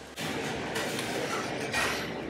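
Steady rushing background noise, like the room noise of a busy diner with its kitchen running. It starts abruptly just after the start and swells slightly brighter near the end.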